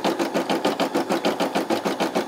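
Brother SE600 embroidery machine stitching at speed, its needle bar driving a rapid, even rhythm of several stitches a second as it sews the outline of the design.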